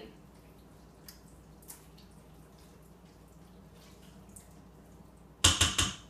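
A spoon stirring thick chili in a multicooker's inner pot, faint and wet. Near the end it is rapped about four times in quick succession on the pot's rim, the loudest sounds.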